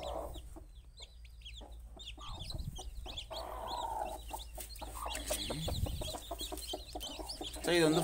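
Newly hatched native-breed chicken chicks peeping: many short, high chirps in quick, irregular succession.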